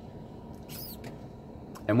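Steady low hum of a running car's heater blower inside the cabin, with one brief high-pitched squeak a little under a second in.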